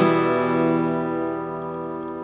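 A steel-string acoustic guitar chord strummed once and left ringing, slowly fading.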